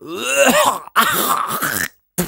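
A man groaning and hawking twice, each effort about a second long, straining to bring up thick phlegm from his throat.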